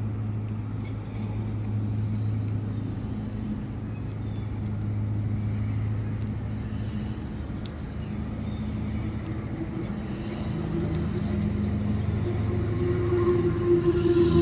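A steady low motor hum, growing somewhat louder with a higher tone near the end, over faint ticks of a squirrel gnawing peanuts.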